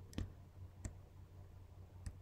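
Two computer keyboard keystrokes, sharp single clicks about two-thirds of a second apart, over a faint steady low hum.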